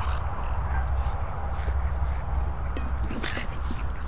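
A dog scuffling with a large ball in grass: a few brief rustles and scuffs, the clearest about one and a half and three seconds in, over a steady low rumble on the microphone.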